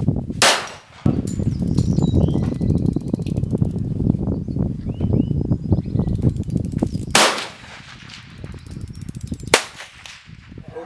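Three single pistol shots fired slowly at distant steel targets: one about half a second in, one about seven seconds in, and one near the end. A steady low rumble fills the gaps between them.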